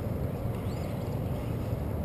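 Steady low background rumble, with a faint high chirp about three-quarters of a second in.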